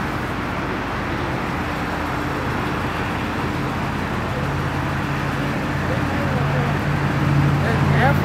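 Steady road traffic noise with a low vehicle engine hum that grows louder over the last few seconds, with faint voices underneath.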